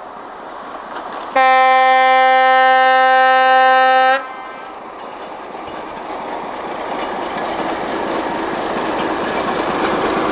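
ČD class 749 'Bardotka' diesel locomotive sounding one long, steady horn blast of about three seconds, starting about a second and a half in. Afterwards the running of the locomotive and its train grows steadily louder as it approaches.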